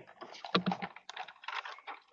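A run of light, quick, irregular clicks and taps.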